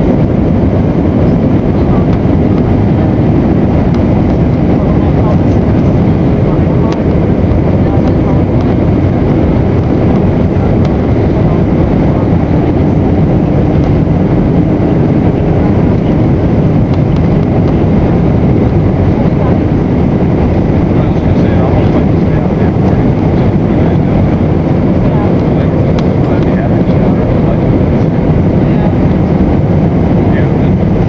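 Steady, loud, low cabin noise of an airliner on its landing approach, heard inside the cabin by the wing: the turbofan engine and rushing airflow, unchanging throughout.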